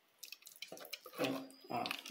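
Wooden spoon stirring thick cooked acerola jam in a stainless steel pot: a string of short, irregular sticky plops and squelches.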